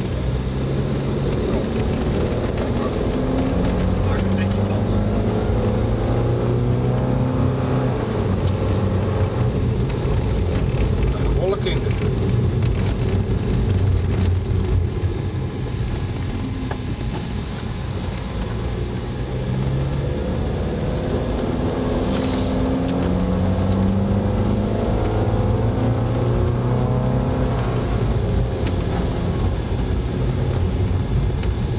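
Van engine and tyre noise heard from inside the cabin while driving on a packed-snow road. The engine note rises and falls slowly as the speed changes.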